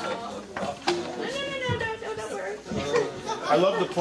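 Indistinct talk from more than one voice: audience chatter and an off-mic exchange with the performer.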